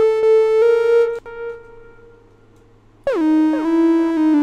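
Synthesizer keys from Arturia Analog Lab V sounding a chord whose notes stack up one after another; it fades out about a second and a half in. A new chord starts about three seconds in, its notes gliding down in pitch as they settle.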